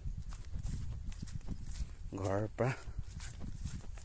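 Steady low rumble of wind on a phone microphone, with light footsteps in grass. A short voice of two quick syllables comes about two seconds in.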